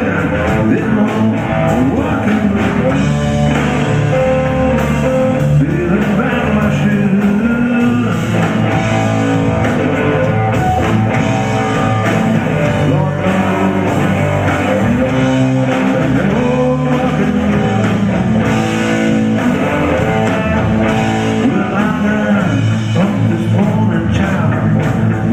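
Live electric blues-rock band in an instrumental break: electric guitar playing over electric bass and drum kit.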